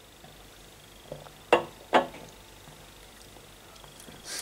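A man sipping cider from a glass and swallowing: three short gulping mouth sounds about one to two seconds in, the middle one and the last one the loudest, over quiet room tone.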